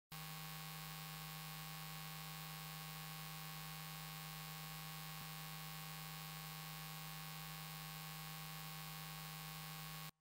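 Steady electrical hum with hiss, one low tone strongest over many fainter steady tones, with a faint click about halfway through; it cuts off suddenly at the end.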